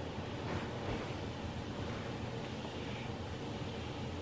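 Steady, faint hiss of background room noise with no distinct events.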